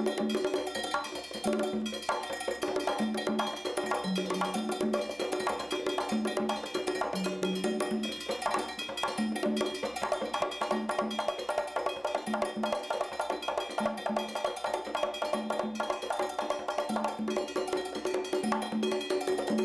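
Congas played by hand in a fast Cuban groove, dense quick strikes running on without a break, within an ensemble that has a bright metallic percussion part and low notes repeating about once a second.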